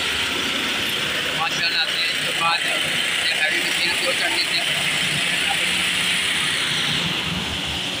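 Steady din of road-paving machinery and street traffic, with engines running and people talking in the background.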